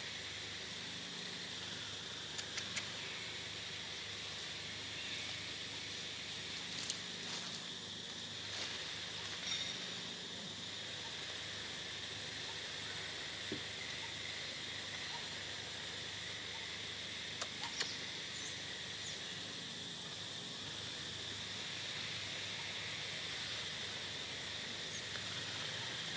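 Steady high-pitched drone of an insect chorus, with a few faint short clicks scattered through.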